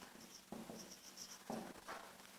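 Dry-erase marker squeaking faintly on a whiteboard in a quick series of short, high strokes as a word is written.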